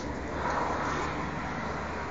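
A car driving past on a wet road: a soft swell of tyre and engine noise that builds about half a second in and then eases off.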